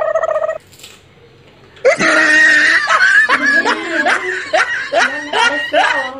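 Laughter in a quick run of bursts from about two seconds in, after a short held high tone at the very start.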